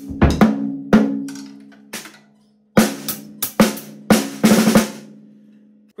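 Snare drum struck repeatedly with a drumstick, about a dozen hits in two groups, the head ringing with a pitched tone that dies away after each hit. The drum is tuned with one tension rod left slack so as to tame unwanted overtones without any muffling.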